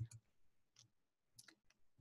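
Near silence broken by a few faint clicks of a computer mouse button, the first and loudest right at the start.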